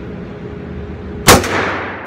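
A single 9mm shot from a Springfield Armory Range Officer 1911 pistol about a second in, with a long echoing decay. The pistol is fired one-handed with no magazine in it, so the extractor alone has to pull out the spent case.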